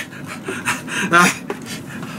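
A man panting and breathing hard through his mouth, with a short strained vocal sound about a second in. He is reacting to the burn of extremely spicy curry.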